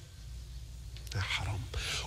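A pause in a man's speech: a low steady hum, then from about a second in faint, breathy voice sounds as he draws breath to speak again.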